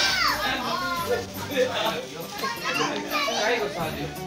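Children's excited voices, shouting and chattering, with a sparkler's fizzing hiss dying away just at the start.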